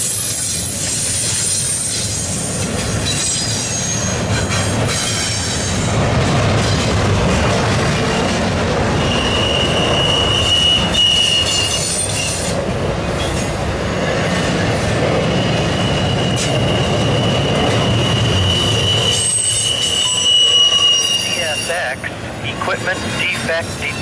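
Freight cars of a CSX intermodal train rolling past close by, with a steady rumble and clatter of steel wheels on the rails. A high, steady wheel squeal comes in about nine seconds in, breaks briefly, and returns from about twelve to twenty-one seconds.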